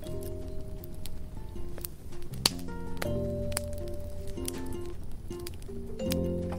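Instrumental music: a slow run of held notes stepping from one pitch to the next, with a few light clicks.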